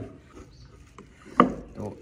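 A hand mixing wet pakora batter of chopped spinach, onion, spices and gram flour in a bowl, with soft squelching and rubbing. A sharp knock comes about one and a half seconds in.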